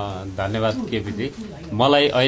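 A man's low voice, speaking or murmuring in short stretches that are not caught as words, with a louder stretch near the end.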